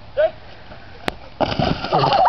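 A sharp single snap, then, from about a second and a half in, a dense rush of splashing and squelching as a boogie board and body land and slide across a bed of water balloons, bursting them.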